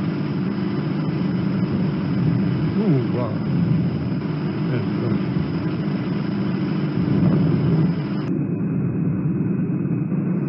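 Steady low mechanical drone, like engine or cabin noise on the soundtrack of aerial strike footage, with a man exclaiming "wow" about three seconds in.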